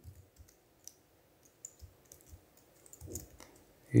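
A few sparse, isolated computer keyboard key clicks, spaced well apart.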